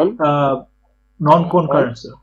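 Speech: a voice speaking two short phrases over a faint steady low hum.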